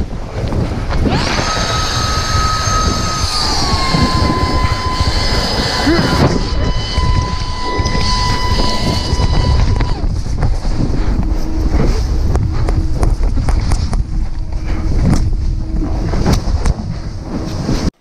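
Wind and tumbling snow rushing over an action camera's microphone as a snowboarder is carried in an avalanche. A steady high whistling tone sounds over it from about a second in, dips slightly in pitch, and stops about ten seconds in. The noise cuts off suddenly at the very end.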